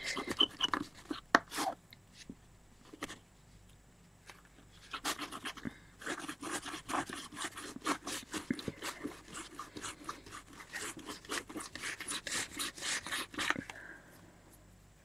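Quick rubbing strokes across paper as dried masking fluid is rubbed off a page painted with black acrylic. A few strokes come in the first two seconds, then after a short pause a fast, continuous scrubbing runs until just before the end.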